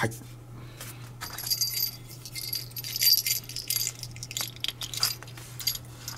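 Light metallic clicks and a brief high, jingling rattle, strongest from about one to three and a half seconds in, as the chrome metal barrel of a 1952 Leica Summicron 50 mm f/2 collapsible screw-mount lens is turned over in the hands.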